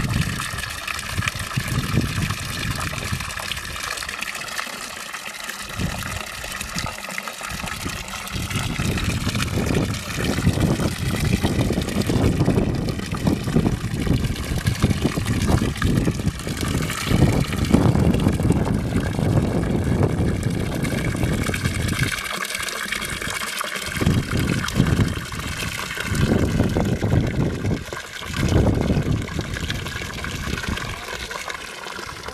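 Water pouring from a hose into a stone basin: a continuous splashing gush.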